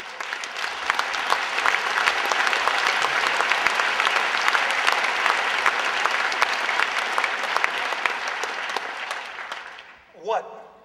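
Audience applauding: dense clapping that builds within the first second, holds steady, and dies away near the end.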